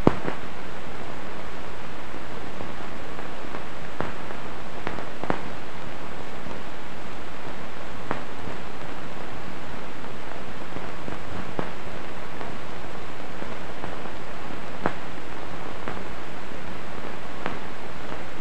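Steady hiss with scattered sharp clicks and pops every second or few: the surface noise of an old film soundtrack.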